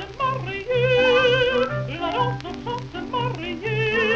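A contralto singing in French with orchestra, on a 1926 78 rpm gramophone recording. Her voice has a wide vibrato and holds a long note about a second in, over an orchestral accompaniment with a steady low pulse.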